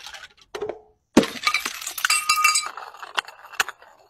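A brown glass bottle smashing on concrete steps: a small knock, then a sharp crash about a second in, with pieces of glass clinking and ringing for about a second and a half. A few separate ticks follow near the end.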